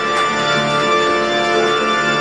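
Organ music holding sustained chords.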